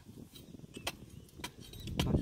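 A wooden stick jabbed into hard, dry soil: a few sharp knocks and scrapes about half a second apart.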